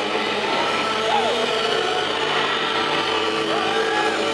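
A live rock band's distorted electric guitar noise and feedback held as a steady, loud drone without a beat, with sliding squeals of feedback about a second in and again near the end.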